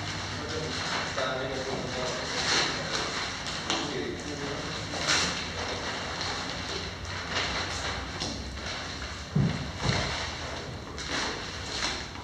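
Indistinct background talk and the rustle of paper documents being handled and leafed through, with two dull thuds close together about nine and a half seconds in.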